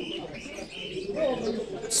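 Low cooing of a pigeon, heard under faint voices in the background.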